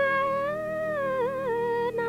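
A woman singing one long held note that sinks slowly in pitch, over a steady low accompaniment.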